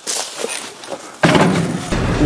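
A quieter hiss, then, about a second in, a sudden cut to the low rumble of a truck's cab while driving, engine and road noise together.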